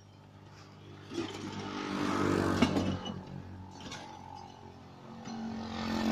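A motor vehicle's engine running, growing louder about a second in and again near the end.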